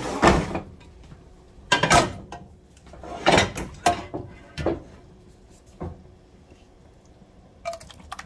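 Several separate clunks and clatters of a cooking pot and a clear glass baking dish being handled on the stovetop grates, spread over the first six seconds. It is quieter after that, with a few small clicks near the end as the mac and cheese is tipped from the pot into the dish.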